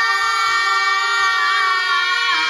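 A loud, steady held tone of several pitches sounding together, like a sustained horn or chord, with slight shifts in pitch near the end.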